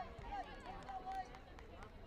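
Distant voices calling out: a few short shouted calls in the first second and a half, over a low murmur of chatter.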